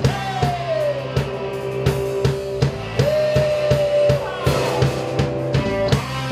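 Rock band playing: a drum kit keeps a steady beat under bass and an electric guitar. The guitar holds long sustained lead notes, sliding down near the start and moving up to a new note about three seconds in.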